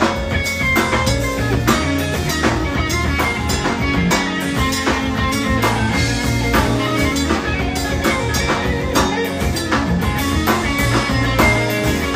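Live band music: an electric guitar playing over a drum kit keeping a steady beat.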